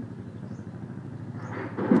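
Steady low hum of distant road traffic, with a woman's voice starting up near the end.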